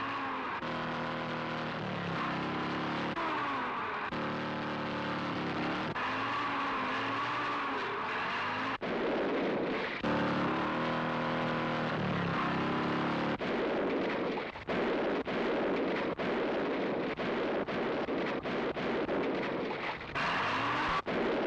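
Motorcycle and jeep engines revving in a chase, their pitch rising and falling over a noisy rush. From about thirteen seconds in, the sound is broken by many brief drop-outs.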